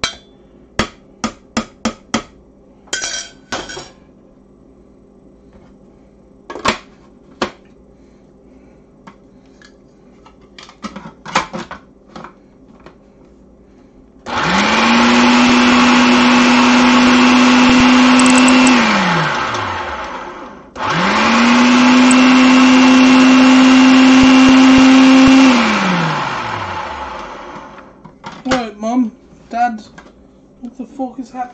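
Countertop food processor chopping asparagus with onion and garlic in two pulses of about four seconds each. Each time the motor spins up quickly, runs steadily, and winds down in a falling whine once it is switched off. Before the pulses there are scattered clicks and knocks as the bowl is loaded and the lid is fitted.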